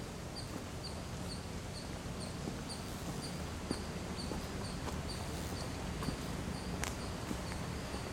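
Steady outdoor background noise with a faint, high chirp from a small animal repeating evenly about twice a second.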